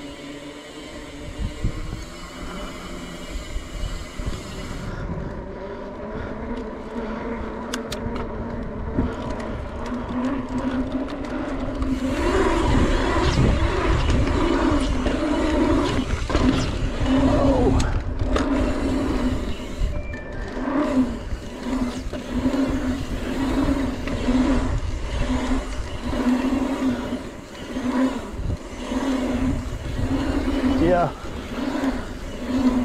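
Mountain bike tyres rolling on asphalt, with wind rushing over the microphone. The sound grows louder about twelve seconds in, as the bike rides onto a pump track, then swells and fades about once a second as it rolls over the humps.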